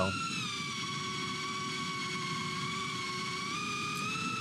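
Small ducted quadcopter's brushless motors and props whining steadily. The pitch dips just under a second in and rises again near the end as the throttle changes.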